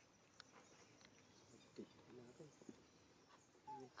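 Faint, short voice-like calls, a few of them gliding in pitch, one falling near the end, with a few soft clicks over quiet outdoor background.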